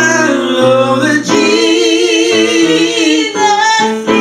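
Gospel singing in close vocal harmony: several voices hold long notes together, with vibrato on the top line, and the chord changes about a second in.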